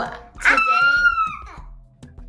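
A toddler's high-pitched squeal, one wavering call of about a second that fades away.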